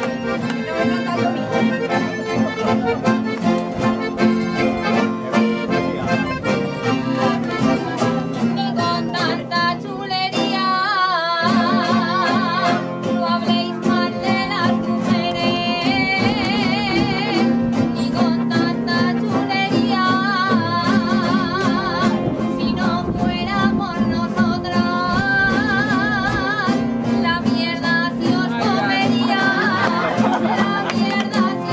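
Aragonese jota (jota de picadillo) played on accordion and guitars. The first ten seconds or so are instrumental, then a woman sings the copla with a wide, strong vibrato over the accompaniment.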